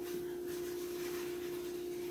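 A steady hum holding one unchanging pitch, over faint even background noise.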